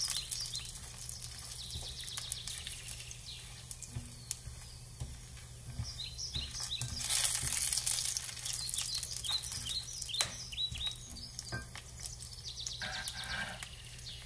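Whole spices (bay leaf, dried red chillies, star anise, cloves and peppercorns) sizzling in hot fat in a stainless steel saucepan as they are tempered, stirred with a silicone spatula. A steady hiss with small crackles and pops, loudest about seven seconds in.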